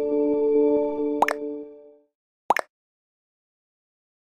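Soft background music of held chords fading out over the first two seconds, with two short rising pop sound effects, one about a second in and one near the middle, as the end card comes up.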